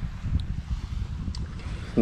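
Wind buffeting the camera microphone: an uneven low rumble.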